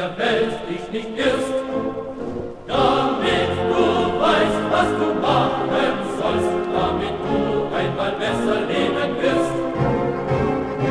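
A choir singing a German soldiers' song, with the music getting louder and fuller about three seconds in.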